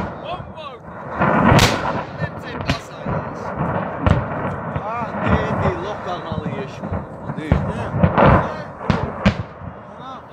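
Ammunition cooking off in a large fire: a string of sharp blasts and pops at irregular intervals over a steady rumble, the loudest about a second and a half in.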